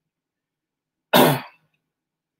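A man clearing his throat with one short, sharp cough about a second in.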